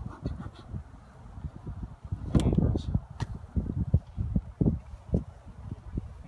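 Wooden beehive parts knocking and scraping as the shim is lifted off and a frame is pulled from the box, with a few sharp knocks in the middle and a low uneven rumble underneath.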